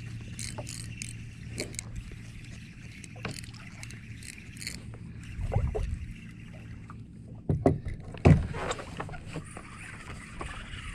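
Water lapping against a plastic fishing kayak's hull while a fish is played on rod and reel, with scattered light clicks through the first half. Two loud knocks on the kayak about seven and a half and eight seconds in.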